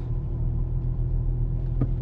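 Steady low drone of a BMW E46's swapped-in M54B30 straight-six running, heard inside the cabin, with a single sharp tick near the end. The driver hears a knock from it that he wonders may be a bearing shell.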